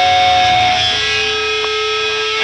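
Live rock band's electric guitars holding long sustained notes, with the low end thinning out about half a second in.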